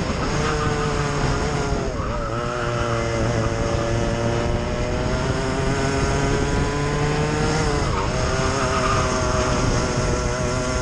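Onboard sound of a racing kart's engine running hard. Its pitch dips sharply about two seconds in and again near the end as the kart slows for corners, then climbs back up as it accelerates out.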